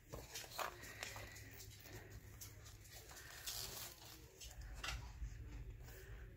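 Paper pages of a coil-bound journal being turned by hand, with faint rustling and a few soft handling sounds.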